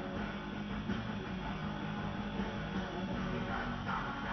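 A black metal track with distorted electric guitars playing back through studio monitor speakers, dense and steady.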